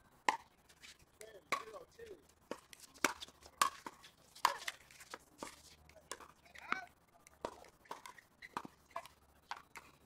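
A pickleball rally: a paddle striking the plastic ball with a sharp pock roughly every second, about a dozen hits in all.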